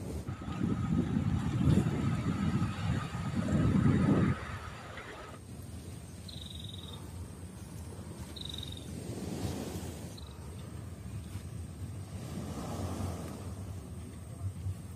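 Wind buffeting the microphone in loud gusts for about four seconds, then quieter open-air background with two short high-pitched tones.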